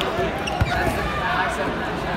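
A single dull thud on a wrestling mat about half a second in, as one wrestler drives the other down in a takedown, over background voices and chatter in a large hall.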